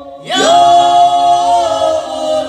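Folk band singing a Slovak folk song with voices in harmony. The voices come in again after a brief dip about a quarter second in and hold a long note.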